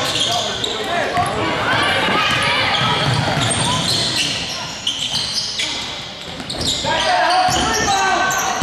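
Basketball game sound in a large echoing gym: sneakers squeaking on the hardwood court, the ball bouncing, and players and spectators shouting and calling out.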